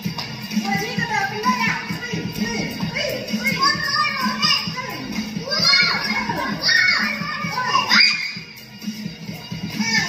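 Young children's excited voices and high squeals during a circle game, over music playing in the background.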